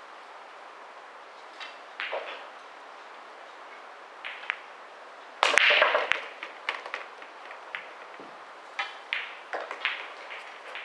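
A 9-ball break shot: the cue strikes the cue ball, which smashes into the racked balls with one sharp crack about halfway through. A scatter of lighter clicks and knocks follows as the balls collide with each other and the cushions. A couple of light clicks come before the break.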